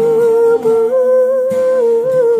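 A man's voice holding a few long, wordless sung notes with a slight waver, over an acoustic guitar he is playing himself.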